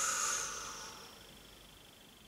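A woman's long, breathy exhale through the lips, a nervous sigh that fades out about a second in.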